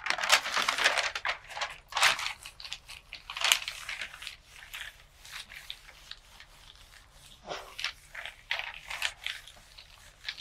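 Sheets of paper rustling and crinkling as they are handled, lifted and pressed flat by hand, busiest in the first few seconds and softer after.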